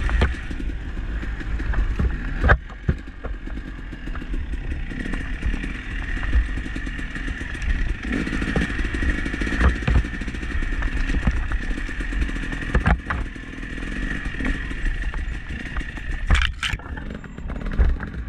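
Dirt bike engine running steadily while ridden, with low wind rumble on the microphone and a few sharp knocks.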